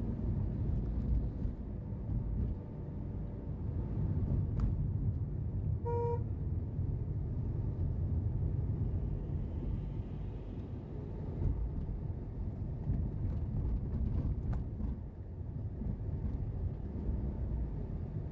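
Steady low rumble of a car driving through city traffic, with a single short car-horn toot about six seconds in.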